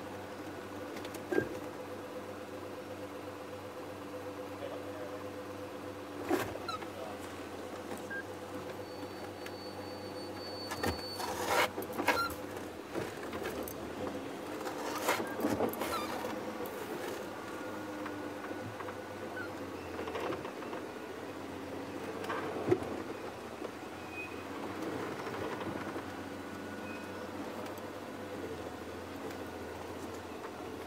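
Game-drive vehicle's engine running steadily at low revs as it creeps along a dirt track, with a handful of short knocks and clicks scattered through it.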